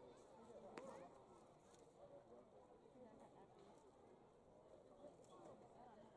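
Faint crowd chatter from the stands of a baseball stadium, close to silence, with one sharp click about a second in.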